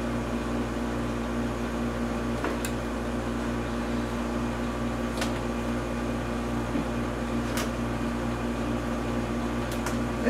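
Steady machine hum, like a ventilation fan or air conditioner running, with a few faint clicks spaced a couple of seconds apart.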